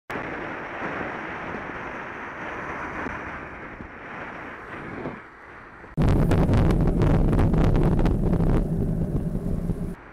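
Wind rushing over the microphone of a moving bicycle with road noise. About six seconds in it jumps to a much louder, deep, buffeting wind rumble with crackles, which eases off near the end.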